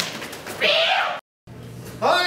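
A short, high-pitched cry that cuts off suddenly at an edit, followed by a moment of dead silence; a second cry starts rising near the end.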